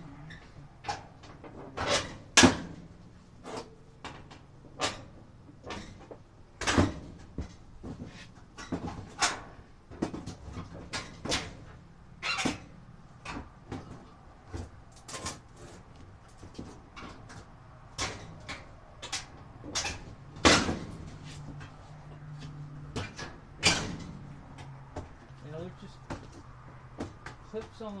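Irregular sharp knocks and clanks, several dozen, of a White Westinghouse clothes dryer's sheet-metal cabinet parts and drum being handled and fitted back together during reassembly, over a low steady hum.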